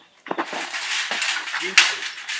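Steel-framed wire-mesh gate rattling and clanking as it is grabbed and shaken, with a loud metal bang just before the end.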